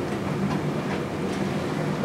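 Steady low room hum with hiss, with a few faint ticks.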